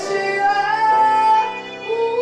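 A man singing live in a high voice, holding one long note through the middle, with acoustic guitar accompaniment.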